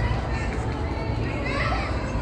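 Busy night street ambience: distant, indistinct voices of passers-by over a steady low rumble of traffic.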